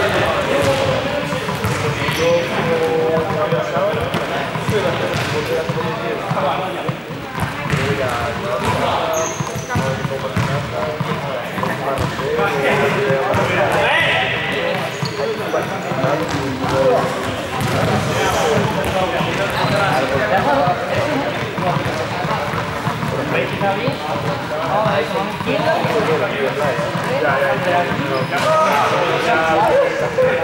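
Several people talking and calling out over one another in a large, echoing sports hall, with a ball bouncing repeatedly on the wooden court floor.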